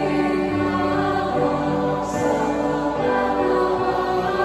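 Youth choir singing a hymn in Aklanon, several voices in harmony holding long, sustained notes.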